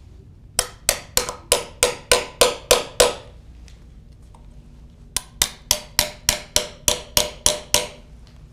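A small hammer tapping the start transducer probe of a Fakopp stress wave timer driven into a timber piling. Each tap sends a stress wave across the wood to the stop probe for a timing reading. Two runs of sharp taps, about nine or ten each at roughly three a second, with a pause of about two seconds between them.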